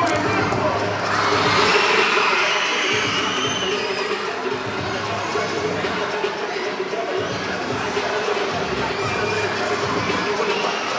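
An audience of children cheering and shouting, swelling loudest a second or two in, over dance music.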